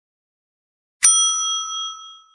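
Notification bell sound effect: a single bright metallic ding about a second in, ringing on and fading away.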